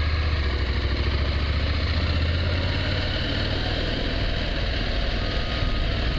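Adventure motorcycle's engine running at low revs while the bike rolls slowly, recorded from the bike itself: a steady low hum that eases slightly about halfway through.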